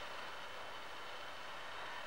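Faint steady hiss of room tone, with a faint thin high whine in it.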